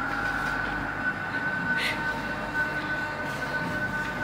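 Steady background hiss and hum with a faint high whine, and a brief scratch of a pencil on paper about two seconds in.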